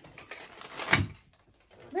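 Rustling and a single sharp knock about a second in, as an object is set down on a hard surface.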